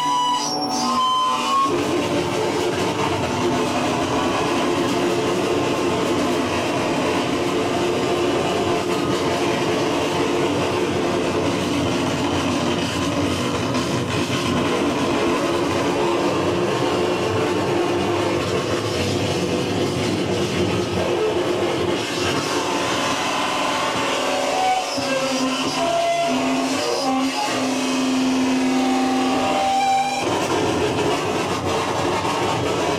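Live noise music from electronics played through an amplifier: a loud, dense, unbroken wall of grinding noise, with a few steady held tones coming through near the end.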